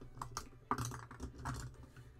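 A run of light clicks and rattles of small plastic cosmetic tubes being picked up and handled.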